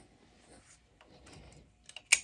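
Near silence: shop room tone, with one faint click near the end.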